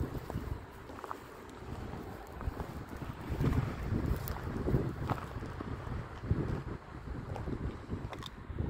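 Wind buffeting the microphone in uneven low gusts, with a few faint scattered clicks and rustles.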